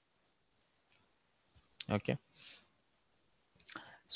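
A few faint computer mouse clicks against quiet room tone, with a short spoken "okay" in the middle.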